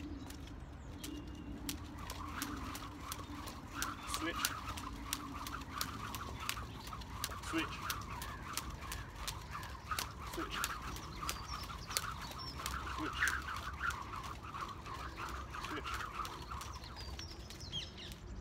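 Jump rope swung side to side in side swings with switches of the leading hand, the rope slapping the pavement in quick, regular strokes over a continuous whoosh through the air.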